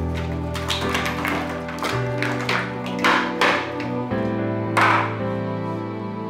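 Background score of slow held chords over a string of short clicks and knocks as ice cubes are cracked out of a plastic ice tray into a bowl, the loudest knock about five seconds in.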